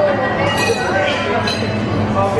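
Busy coffee-shop background: a hubbub of voices with a few light, ringing clinks of dishware.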